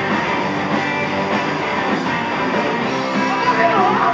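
Live rock band playing: two electric guitars, bass guitar and drums together at a steady level.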